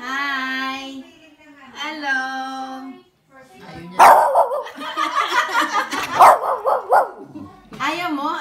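A small long-haired dog barking and yowling with its head thrown back, a loud rapid run of calls from about four seconds in that lasts some three seconds. Before that come two long, drawn-out held vocal notes.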